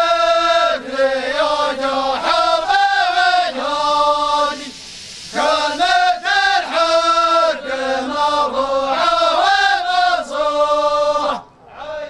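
A line of men chanting together in unison in a traditional Saudi folk group song, without instruments, in long sung phrases with a short break about five seconds in.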